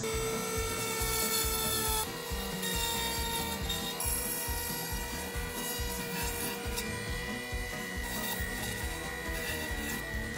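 Dremel rotary tool on a flex shaft running steadily with a router bit, grinding into polystyrene insulation foam: a held motor whine over a scraping, rubbing grind.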